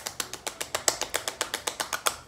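Quick, light pats of palms and fingertips on the cheeks, working a slippery snail mucin cream into the skin, about seven to eight pats a second.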